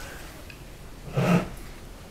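A short breath or sniff from a man about a second in, over quiet room tone.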